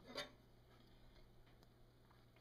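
Near silence: room tone with a faint steady low hum, broken by one short, sharp sound about a fifth of a second in.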